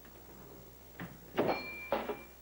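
Crystal glassware clinking: a light knock, then a sharper glass-on-glass contact that leaves a clear ringing tone for about a second.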